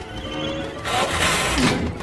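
Cartoon whoosh sound effect of the flying saucer zooming away fast, a sweep of rushing noise lasting about a second that starts about a second in, over background music.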